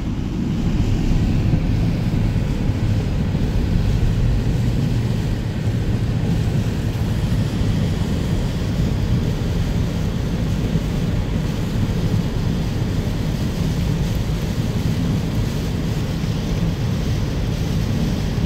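Steady road and rain noise inside a car driving on a wet highway in heavy rain: tyres on standing water and rain on the body, heard from the cabin.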